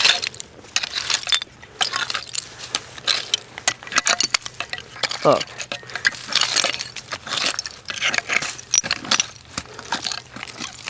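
A hand digging tool scraping and raking through loose soil, with rapid, irregular clinks and crunches as it strikes buried glass and shards.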